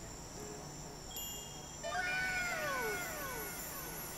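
A faint short sound effect from the playing video's soundtrack: after a brief high tone, several overlapping tones glide downward in pitch, starting about two seconds in.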